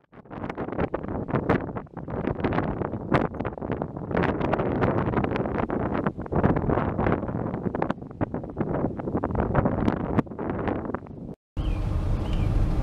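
Gusty wind blowing on the microphone: an uneven noise with irregular buffets that cuts off suddenly near the end.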